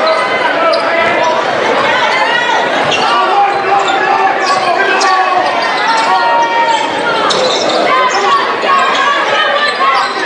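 Basketball game sounds in a gym: a ball being dribbled on the hardwood floor, sneakers squeaking in short, sharp chirps, and the voices of players and crowd echoing through the hall.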